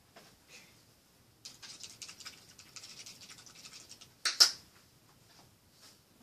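Close rustling and rapid small clicks of things being handled next to the microphone for a couple of seconds, then one sharp knock, the loudest sound.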